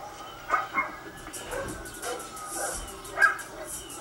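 A dog barking several times, in short, faint barks spread out over a few seconds.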